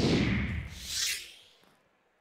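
A whooshing transition sound effect for the match-results reveal: a noisy swell that sweeps downward, a second hissing surge about a second in, then a fade away.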